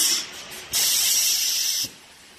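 Conveyor-belt vacuum packing machine hissing with rushing air in two bursts: the first dies away just after the start, and the second lasts about a second and cuts off suddenly.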